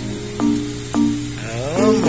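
Background music with held notes and a rising melodic phrase near the end.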